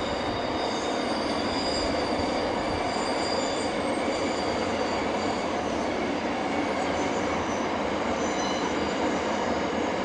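Double-stacked intermodal container wagons rolling past: a steady rumble of steel wheels on rail, with thin, wavering high-pitched wheel squeal from the flanges on the curve.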